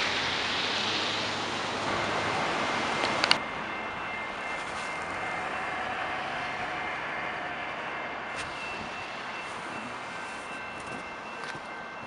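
Steady rushing noise of an approaching commuter train, which breaks off sharply with a click about three seconds in. After that the sound is quieter, with faint steady high-pitched tones.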